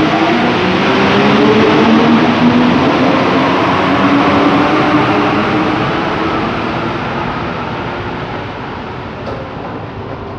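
Santiago Metro rubber-tyred train pulling out of the station, its traction motors whining over a loud rolling noise. The sound fades steadily over the second half as the train draws away.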